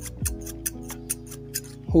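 Steel thinning scissors snipped open and shut close to the microphone: a quick, regular run of crisp clicks, which the owner takes as the sound of sharp blades.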